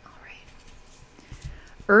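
Faint handling of a tarot card deck in the hands, soft rustles and light taps, in a quiet room. A woman's voice starts speaking right at the end.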